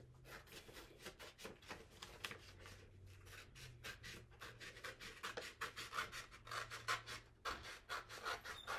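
Scissors cutting a printed sheet of sublimation transfer paper: a steady run of quick snips, about four a second.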